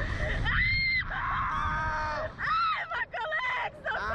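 Two riders on a slingshot ride screaming: a run of long, high-pitched screams, one rising and then held. Wind rumbles on the microphone underneath.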